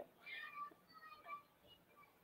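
Near silence, with a few faint, brief high-pitched sounds in the first part.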